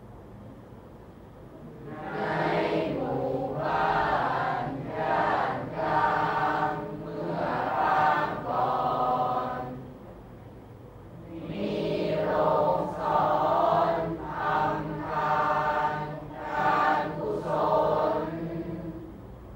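A group of voices reciting Thai verse aloud in unison in a drawn-out chanting melody, in two long phrases separated by a short pause.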